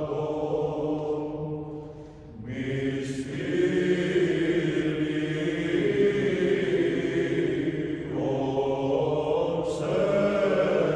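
Orthodox church chant: sung voices holding long, slow notes. There is a brief pause about two seconds in before the next phrase begins.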